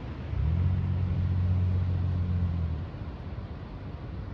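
A low steady hum that starts suddenly about half a second in and cuts off just before three seconds, over a constant hiss.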